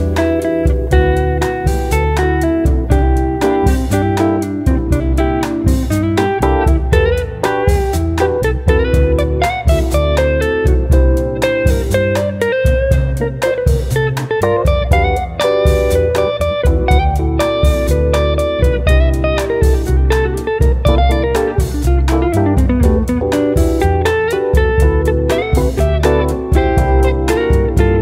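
Instrumental break of a band recording: a guitar plays a lead line over bass and a steady drum beat.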